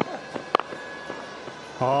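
Cricket bat striking the ball once, a single sharp crack about half a second in, over faint stadium ambience; a commentator's voice comes in near the end.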